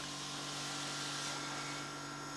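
Dairy milk-room machinery running: the milk pump and bulk tank cooling equipment give a steady low hum with a faint higher whine over an even hiss.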